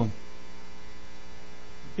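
Steady electrical mains hum with a faint hiss underneath, the recording's own noise floor between spoken phrases.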